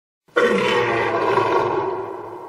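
A lion's roar, played as a sound effect: it starts suddenly about a third of a second in, holds loud, and begins to fade near the end.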